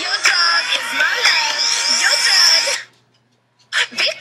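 Young voices singing or talking over music. The sound cuts out abruptly about three seconds in for most of a second, then starts again.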